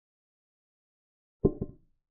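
Chess software's piece-capture sound effect, played as a black knight takes a pawn: a short double wooden click about one and a half seconds in.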